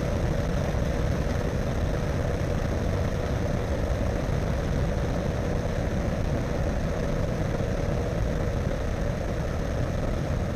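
Ultralight trike's engine and propeller running steadily in flight, heard close up from the tail boom, mixed with a rush of wind over the microphone.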